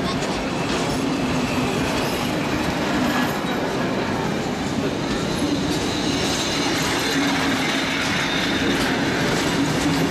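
Steel-wheeled heritage passenger carriages rolling past on a departing train, their wheels running over the rails in a steady, continuous rumble.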